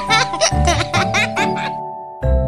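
High-pitched cartoon voice giggling over light background music. The giggling stops near the end while the music's held notes carry on.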